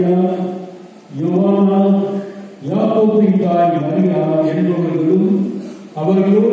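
A priest chanting a liturgical text, one man's voice holding long, steady notes in phrases of one to three seconds, with short breaks about one and two and a half seconds in.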